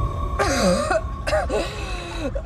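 A woman choking and coughing with strained vocal sounds that slide down in pitch, starting about half a second in, over eerie film-trailer music with a held high note.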